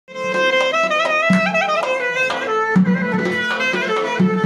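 Clarinet playing an ornamented Armenian folk melody with accordion accompaniment, starting abruptly, with low beats underneath.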